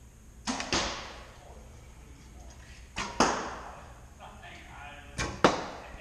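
Three bow shots about two and a half seconds apart: each a sharp snap of the bowstring on release, followed about a quarter second later by a second sharp hit, the arrow striking the target, with an echo trailing off after each.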